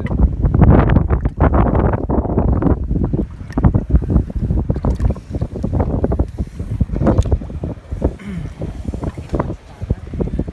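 Loud, gusty wind buffeting the microphone on an open boat, with irregular knocks through it.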